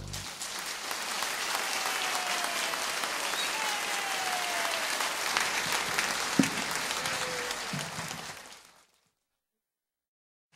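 Concert audience applauding, steady and full, then fading out near the end into dead silence.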